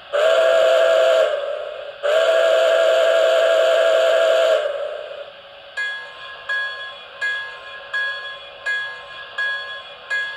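MTH Premier O-scale model of steam locomotive 765, its onboard sound system blowing the steam whistle twice, a shorter blast and then a longer one, then ringing the locomotive bell, about three strikes every two seconds, from about six seconds in.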